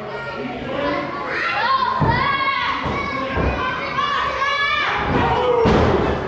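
Wrestlers' bodies slamming onto the wrestling ring mat, several heavy thuds about two, three and a half and near six seconds in. High-pitched shouting from children in the crowd carries on throughout.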